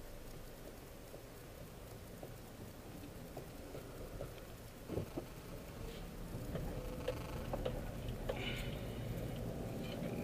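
Low, steady rumble of a car's engine and cabin heard from inside the moving car at low speed, with scattered light clicks and ticks. The noise grows a little louder in the second half as the car moves off.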